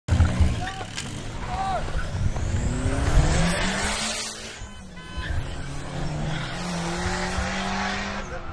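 Car engines revving and running on a highway, their note rising and falling, with rushes of passing traffic swelling about three seconds in and again near the end. A couple of short shouts are heard in the first two seconds.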